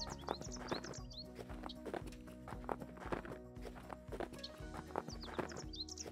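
Faint background music with steady held tones, over the hoofbeats of a horse trotting on arena sand.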